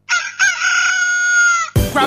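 A rooster crows once, one long call of about a second and a half. Just before the end, music with a drum beat cuts in suddenly.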